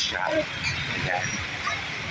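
Busy street: traffic running in a steady low rumble, with people's voices near the start and again about a second in.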